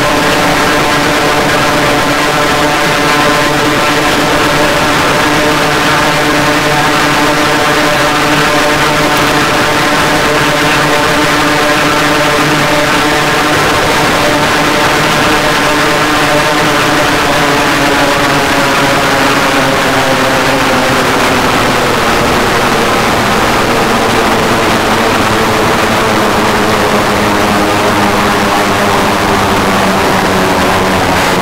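Electronic drone improvisation on a Ciat-Lonbarde Cocoquantus 2: a loud, dense chord of many held tones. The chord starts drifting slowly downward in pitch about two-thirds of the way through.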